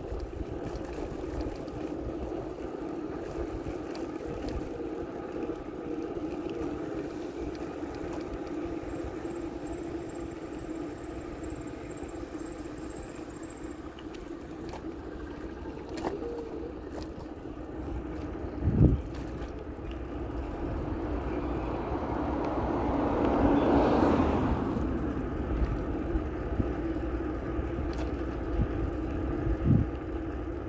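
Bicycle riding along a paved road: a steady rush of tyre and wind noise, with a single thump a little past halfway and a louder rushing swell that builds and fades about three-quarters of the way through.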